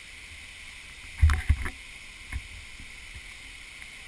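Footfalls of a hiker climbing a rock trail: a quick cluster of heavy thumps a little after the first second and one more about a second later, over a steady high hiss.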